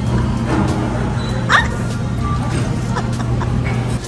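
Background music playing, with a short rising squeak about one and a half seconds in.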